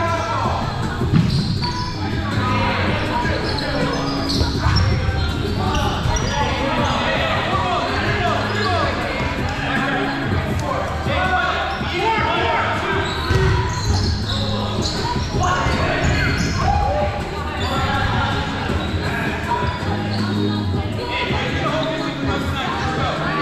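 Foam dodgeballs thrown, hitting and bouncing on a hardwood gym floor, with sharp thuds about a second in, near five seconds and near thirteen seconds. Players' voices call out throughout, echoing in the large gym.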